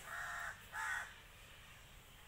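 A bird calling twice in quick succession: two short harsh calls about three-quarters of a second apart, the second one louder.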